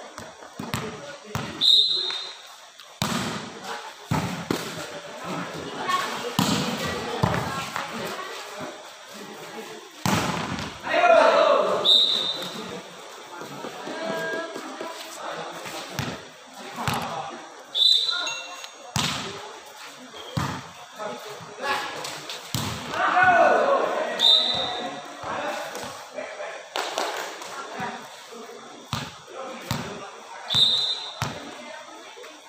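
Volleyball being struck again and again in rallies, sharp slaps of serves, passes and spikes, with players and spectators shouting loudly twice. A short high whistle blast sounds about every six seconds.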